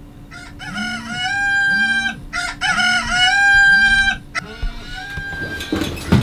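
Rooster crowing played as a phone alarm: two long crows, then a shorter call, waking a sleeper. Near the end a broad rustling rush comes in.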